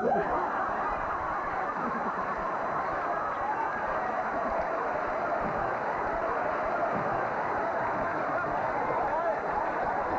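Long, unbroken laughter from a sitcom studio audience, a dense, steady wash of many voices laughing at once that follows a fluffed line.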